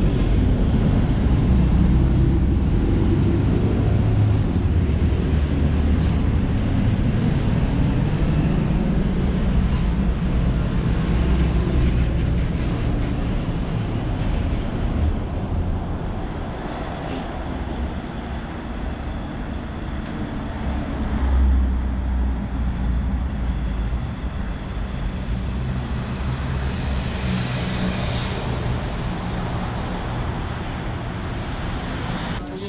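Steady street traffic noise: a continuous low rumble of vehicles on the adjacent road, rising and falling as they pass, with a brief louder swell about 21 seconds in.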